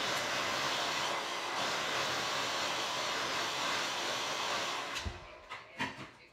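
Handheld hair dryer blowing steadily on hair, switched off about five seconds in, followed by a few short knocks.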